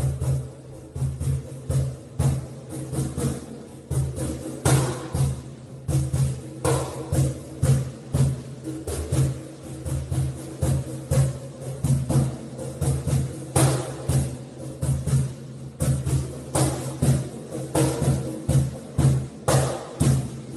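Percussion music driven by drums, with evenly spaced beats at about two a second, each carrying a low ringing tone and now and then a sharper accented hit.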